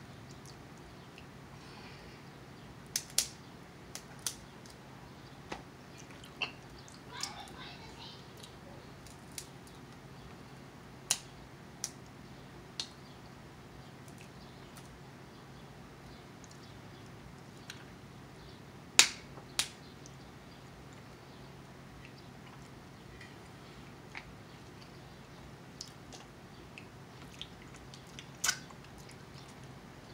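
Irregular sharp clicks and cracks of snow crab leg shells being snapped and picked apart by hand, with soft eating sounds between them; the loudest crack comes a little past halfway. A steady low hum runs underneath.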